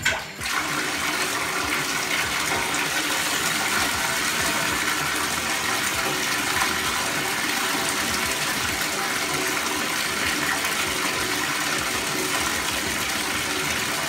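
Bathtub tap turned on and left running, water pouring steadily into a partly filled tub and working bubble bath into foam. The flow is weak, which she puts down to low water pressure.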